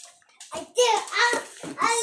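A young boy talking in a high-pitched voice.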